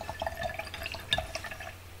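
Light water dripping and small splashes with little clicks, typical of a paintbrush being rinsed and tapped in a water pot.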